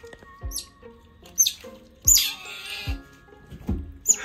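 Asian small-clawed otter pup giving several short, high-pitched squeals that fall in pitch, the loudest about two seconds in: angry calls. Background music with a steady beat runs underneath.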